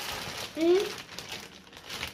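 Thin plastic packaging crinkling as a clothing item is handled and pulled from its bag, with a short voice sound just under a second in.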